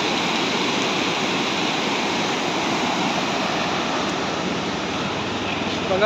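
Steady rush of a fast-flowing river running over rocky rapids.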